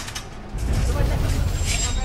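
Aluminium ladder clanking and rattling as it is handled and set against a booth roof, with a sharp click at the start and a brief bright metallic clink near the end. A low rumbling noise comes in about half a second in and is the loudest sound.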